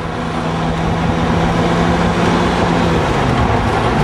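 Ferrari 360's V8 engine running at a steady cruise, heard from inside the open-top car with heavy wind and road rush. The sound swells in over the first second, and the engine note dips slightly about three seconds in.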